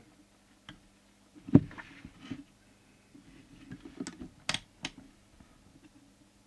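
Scattered light clicks and taps of a meter test prod against the crowded circuit board and metal chassis of a CB radio as it is worked down towards a test point that it cannot quite reach. One louder knock comes about one and a half seconds in, and a faint steady hum sits underneath.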